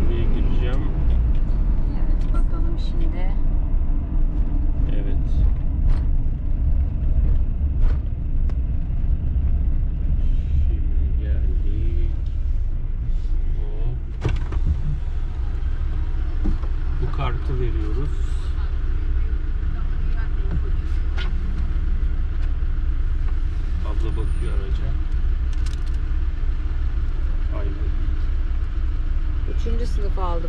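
Steady low rumble of a Fiat Ducato camper van's engine heard from inside the cab as the van rolls up to a toll booth and then idles there. Brief bits of voices sound over it now and then.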